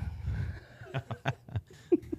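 Men laughing quietly, a string of short chuckles with a brief voiced laugh near the end.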